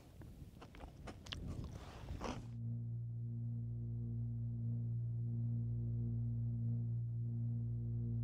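Faint crunching and chewing of a crisp Kurkure corn snack. About two and a half seconds in, this gives way to steady background music of held low tones, like a singing bowl.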